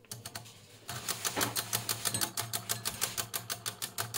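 Stepper motor and mechanical drum counter of a 1970 Mettler TM15 temperature readout ticking rapidly and evenly as it drives the reading upward, tracking a sensor that has just been put into hot water. The ticking starts about a second in, over a low steady hum.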